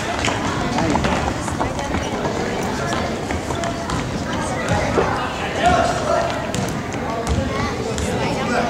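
Gym hubbub during a youth basketball game: overlapping chatter from spectators and players, with running footsteps and scattered short knocks and squeaks on the hardwood court.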